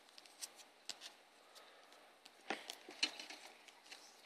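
Faint clicks and crinkles of a thin clear plastic penny sleeve being handled as a trading card is slid into it, with the sharpest ticks about two and a half and three seconds in.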